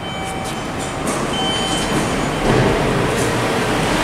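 A Fujitec traction elevator arriving at the landing and its doors sliding open: a steady mechanical rumble that grows gradually louder, with a few faint steady tones in the first half.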